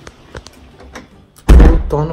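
A few faint clicks, then a sudden loud thump about one and a half seconds in, just as a woman starts speaking.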